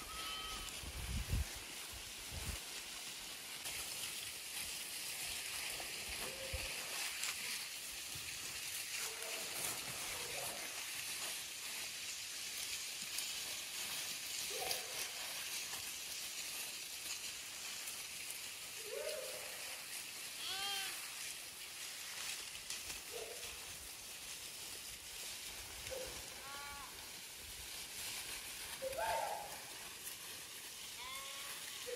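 A mixed flock of sheep and goats bleating now and then, with about eight short calls, most of them in the second half, some wavering in pitch. A steady high hiss runs underneath, and there are a few brief low thumps near the start.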